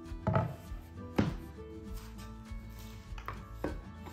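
Wooden boards being set down and slid on a workbench mat: four sharp wooden knocks, the loudest in the first second and two close together near the end, over soft background music.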